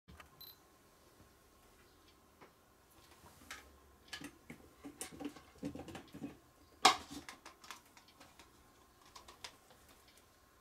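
Scattered light clicks and taps of small items being handled on a workbench, busiest in the middle, with one sharper click about seven seconds in as the loudest.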